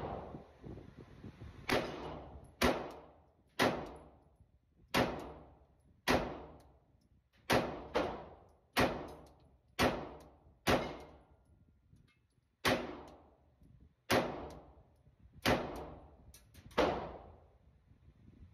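Pistol fired shot by shot in an indoor range: about fourteen single shots, roughly one a second with one slightly longer pause, each a sharp crack that rings briefly off the booth walls.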